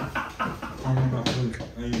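A man's voice talking, with a sharp click at the start and another about a second and a quarter in.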